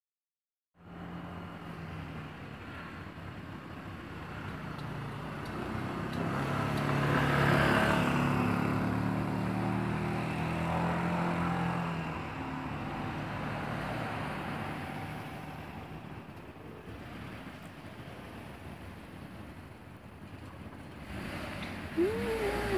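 A motor vehicle's engine running close by at low speed, growing louder to a peak about a third of the way in and then slowly fading.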